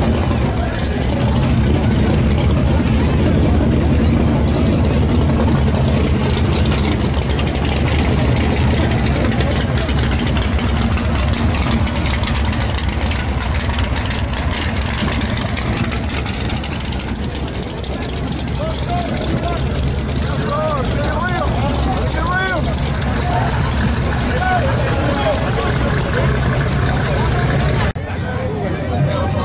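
A drag-race car engine idling with a steady, loud rumble while crowd voices run over it. Some higher voices rise and fall about two-thirds of the way in.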